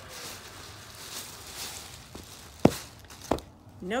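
Black plastic bag rustling and crinkling as it is pulled off a patio pillow, with two sharp knocks about half a second apart near the end.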